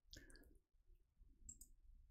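Faint clicks of a computer mouse and keyboard, a cluster near the start and another about one and a half seconds in, over near silence.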